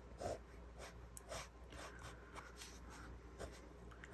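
Faint scratching of a pen drawing on journal paper, in short, irregular strokes.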